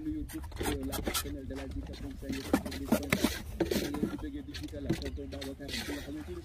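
Steel trowel scraping and tapping mortar along the top of a concrete-block wall, in short strokes, while people talk in the background.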